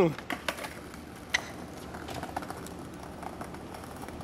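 Skateboard being stepped onto and pushed off across stone tile paving: the wheels roll with a low, even noise and a few light, irregular clicks.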